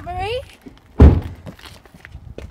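A single heavy thunk about a second in, a vehicle door shutting on a white van; a brief voice is heard just before it.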